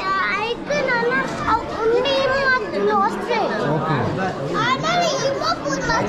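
Children's voices talking and calling out excitedly, overlapping with the chatter of a crowd.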